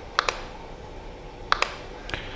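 Computer mouse clicks: two quick pairs of sharp clicks, one just after the start and one about a second and a half in, over a faint steady hum.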